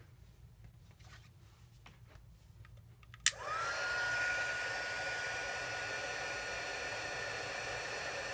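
Craft heat gun switched on with a click about three seconds in, its motor whine rising quickly and then holding steady under the rush of hot air, as it melts embossing powder on a stamped paper flower.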